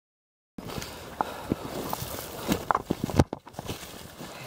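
Hurried footsteps crunching through dry leaf litter and snapping twigs, starting about half a second in, as people move quickly through bush on foot.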